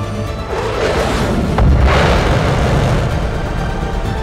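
Orchestral film score with a jet-engine sound effect: a whoosh swells about half a second in, then a sharp crack and a deep boom near the middle as the jet blasts off, fading out under the music.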